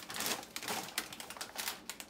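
Mini pretzel twists pouring from a plastic bag into a plastic bowl of Crispix cereal, a rapid run of small hard clicks as they land.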